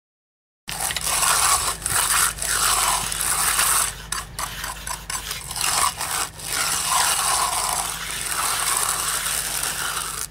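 Hand edger scraping back and forth along the edge of fresh concrete, a gritty rasp in repeated strokes roughly once a second. It starts after a short silence, about a second in.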